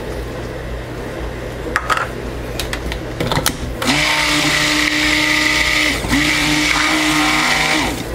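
A handheld stick blender mixes cream into soap-making oils in a plastic jug. It starts about four seconds in with a steady motor hum, stops briefly after about two seconds, then runs again for about two more. Before it starts there are a few light clicks of handling.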